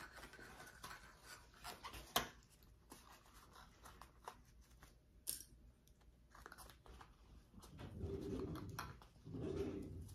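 Faint rustling of fabric being handled, with scattered light clicks as plastic sewing clips go on the pieces, and a louder, longer rustle of fabric toward the end.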